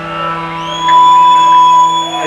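Live rock band's last chord ringing out through the amplifiers. About a second in, a steady, high, loud feedback tone swells in over it and holds.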